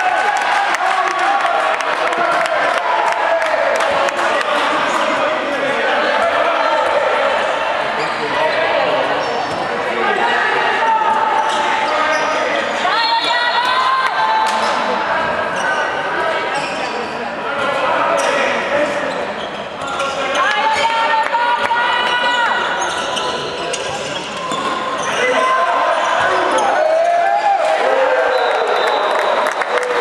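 A handball bouncing repeatedly on an indoor court during play, with voices calling out, all echoing in a large sports hall.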